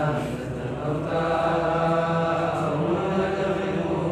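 Verses of an Arabic grammar poem chanted in a slow, drawn-out melody, with long held notes.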